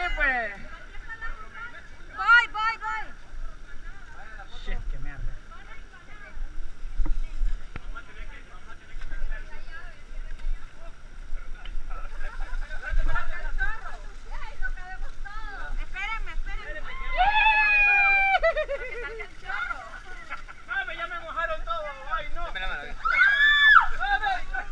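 Several people talking and calling out, indistinct and at a distance, over a steady background hiss. There is a louder call about two-thirds of the way in and another near the end.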